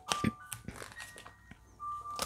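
Faint taps and light clicks of tarot cards being picked up from a deck on a table, with a few soft held tones of quiet background music.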